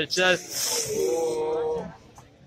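Speech: a voice calls out "one minute left", followed by one drawn-out voiced sound with a hissing edge that ends shortly before two seconds.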